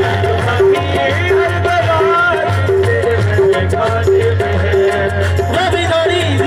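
Live qawwali music: singing over a harmonium's sustained reed notes, with tabla keeping a steady beat.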